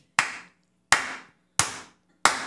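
A man clapping his hands three times, slowly and evenly, about three-quarters of a second apart. Each clap is sharp and fades quickly in the room.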